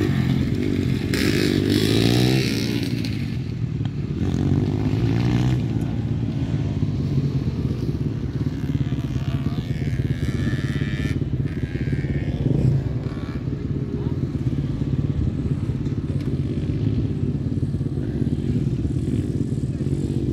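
Dirt bike engines running on a motocross track, their pitch rising and falling with the throttle in the first few seconds, then a steadier drone from bikes further off.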